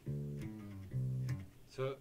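Ibanez Musician four-string electric bass playing three plucked notes of a bass line, the last note stopping about a second and a half in.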